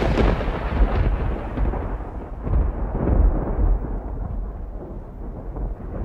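A loud, low rumble that sets in suddenly just before and slowly dies away, with surges about a second and about three seconds in.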